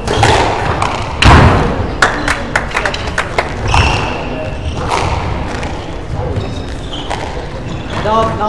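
Squash ball being struck and rebounding off the court walls during a rally: a string of sharp knocks and thuds, the loudest a little over a second in, with short squeaks of shoes on the wooden floor.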